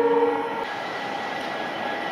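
Horn of a WDM-3A ALCo diesel locomotive holding a chord of several steady tones, which cuts off about half a second in. After it comes the steady running of the locomotives' ALCo 251B diesel engines.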